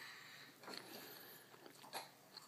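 Near silence, with a few faint clicks of spoons in plastic cereal bowls, the clearest near the end.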